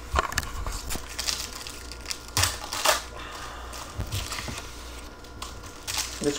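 Foil trading-card pack wrappers crinkling as gloved hands handle them, in a few short crackles, over a steady low hum.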